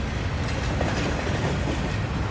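Double-stack intermodal container freight train rolling past, its wheels on the rails making a steady noise.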